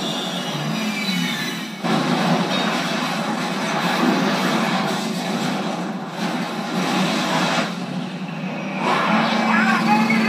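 Action-film battle sound effects played from a screen and re-recorded, thin in the bass: a dense, noisy mix of crashing aircraft and explosions, with a sudden loud hit about two seconds in and a steady low hum coming in near the end.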